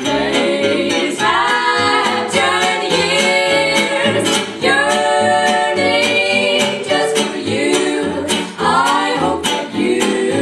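Three women singing in close harmony, backed by plucked upright bass and acoustic rhythm guitar keeping a steady beat.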